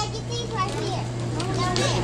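Children's voices talking softly in short snatches over a steady low hum.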